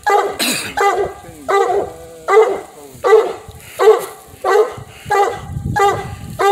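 Coonhound barking treed at the base of a tree, a steady run of short chop barks about one every three-quarters of a second: the sign that the hound has trailed a raccoon to this tree.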